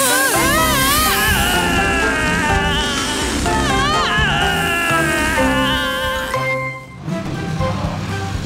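Cartoon background music with a high, wobbling squeal rising and falling in pitch, a deflating-balloon sound effect as air rushes out of the balloon. The music fades out about seven seconds in.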